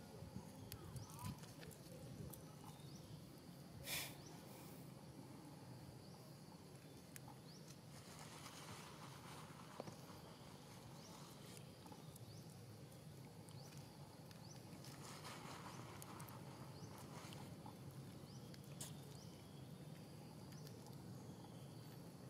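Faint outdoor ambience: a steady low hum with scattered small clicks and rustles, and one short, sharp scrape-like burst about four seconds in.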